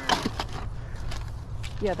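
A few light knocks and clicks of toys and small items being handled and packed into a cardboard box, over a steady low outdoor background hum. A voice says "yeah" near the end.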